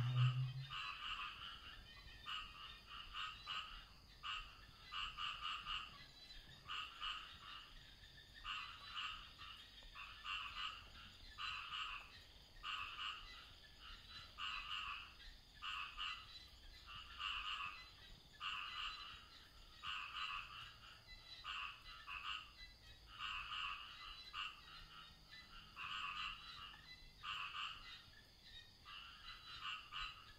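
Frogs calling faintly, a chorus of short, rough calls repeating about once a second.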